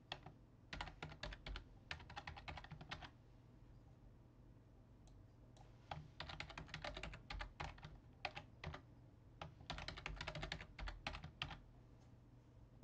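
A computer keyboard being typed on in quick runs of keystrokes: one run about a second in, then, after a pause of about three seconds, two more runs close together. This is a password being entered and then re-entered to confirm it.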